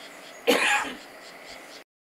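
A man clears his throat once, a short rough burst about half a second in, over faint outdoor background. The sound then cuts off abruptly to silence near the end.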